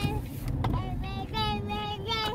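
A young child singing a string of short, high notes, over the low steady rumble of car road noise inside the cabin.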